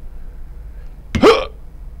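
A man's sharp, startled gasp about a second in, rising quickly in pitch, as a cheese cut goes wrong.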